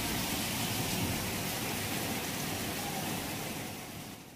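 Heavy rain falling, a steady hiss that fades out near the end.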